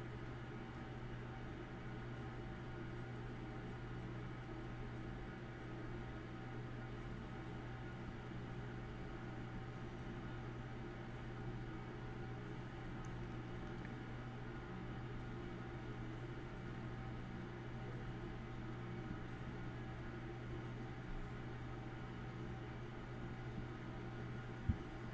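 A steady low hum with a faint hiss, unchanging throughout and with no separate knocks, clicks or motor runs.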